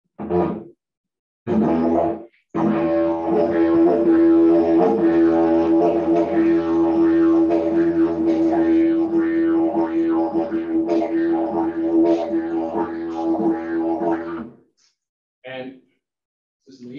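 Bloodwood didgeridoo played to imitate a kangaroo. Two short starts are followed by a long, steady drone with rhythmic pulses over it, which runs about twelve seconds and stops shortly before the end, then one brief note.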